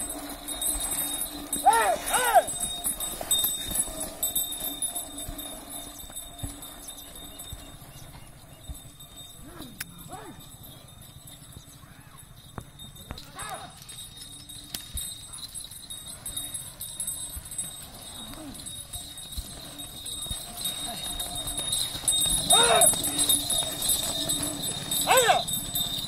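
Hoofbeats of a yoked pair of bulls on a dirt track as they drag a stone slab, with men giving loud wordless shouts to drive them on. The shouts are loudest about two seconds in and twice near the end.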